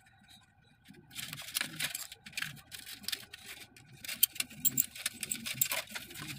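Hand snips cutting through steel wire mesh: a quick, irregular run of sharp metallic snips and wire clicks, starting about a second in.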